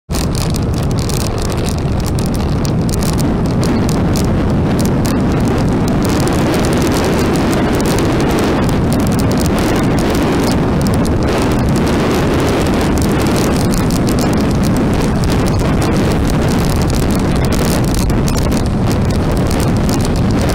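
Steady rush of wind on the microphone mixed with road and engine noise from a motorbike riding at speed.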